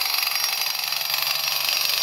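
A steady, high-pitched mechanical rattling noise that carries on without a break, from the tent crew's work outside.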